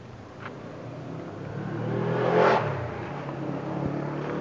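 A car driving past on the road: engine and tyre noise swelling to a peak a little past halfway, then fading.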